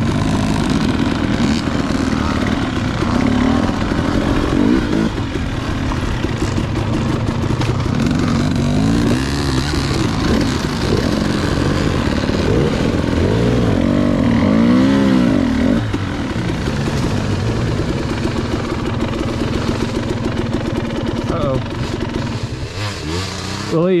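KTM two-stroke dirt bike engines running, revved up and down in a series of rising and falling surges around the middle, typical of picking a way slowly up a steep, rough trail.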